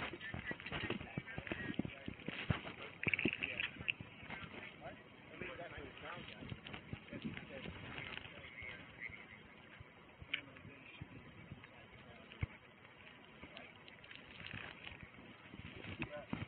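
Faint, indistinct voices, too low to make out, over a steady background hiss, with scattered clicks and rustling throughout.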